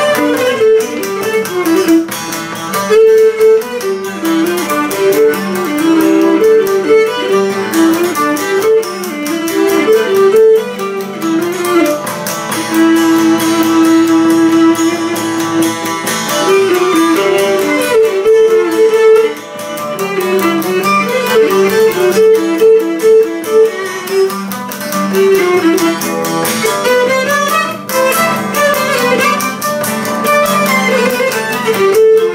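Cretan lyra bowing a quick melody over a laouto strumming chords, a duet of Cretan folk music. The lyra holds one long note about halfway through, then returns to short running notes.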